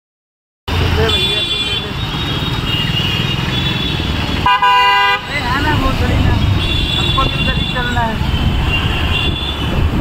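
Street traffic with vehicle horns honking: several short high toots, and one loudest horn blast about four and a half seconds in, lasting about half a second. Traffic noise and people's voices around it.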